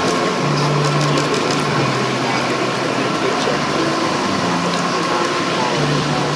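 A Rolls-Royce turbofan jet engine running on an outdoor test stand: a steady, loud roar with a thin, steady whine in it.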